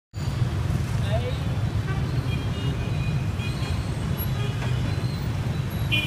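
Dense street traffic of motorbikes and cars running past in a steady low rumble, with a few short horn beeps about two and three and a half seconds in.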